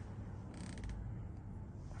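Quiet room tone with a steady low hum, and a brief patch of faint clicking about half a second in.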